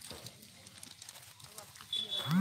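Quiet outdoor background with faint, distant voices and a few soft clicks. Near the end a high, thin steady tone begins.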